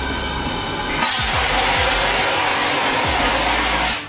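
CO2 fire extinguisher discharging onto a burning computer: a loud, steady hiss that starts suddenly about a second in and cuts off near the end, as the fire is put out.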